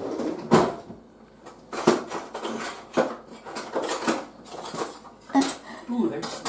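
A string of separate sharp clinks and knocks of metal utensils against a pie tin and plates as a pie is cut and served.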